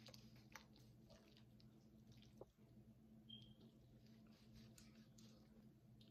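Faint sounds of a kitchen knife slicing through a raw pork leg on a wooden cutting board: soft wet squishes and a few light knocks, over a low steady hum.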